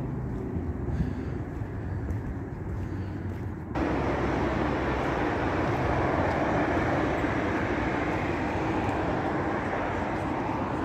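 Street traffic noise: a low steady rumble, then from about four seconds in a sudden jump to a louder, even rushing hiss as a car drives past on the road.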